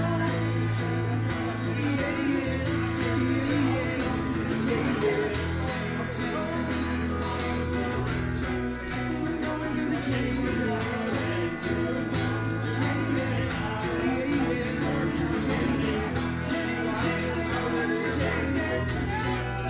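Live band music with guitar and a steady beat, playing continuously.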